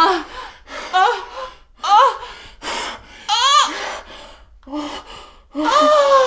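Women moaning and breathing hard during lovemaking. There is a short voiced moan about once a second, with breathy exhalations between. A higher cry rises and falls about three and a half seconds in, and a longer moan comes near the end.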